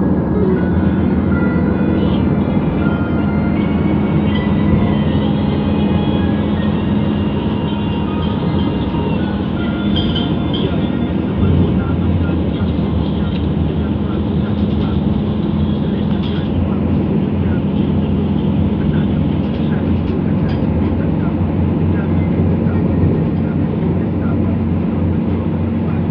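Steady road and engine noise inside a car's cabin as it drives along a highway.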